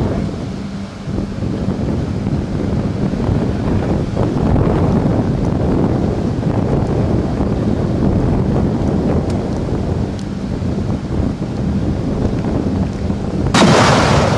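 Wind rumbling steadily on the microphone with a faint hum, then, near the end, a sudden loud blast: a twin-barrel anti-aircraft gun firing.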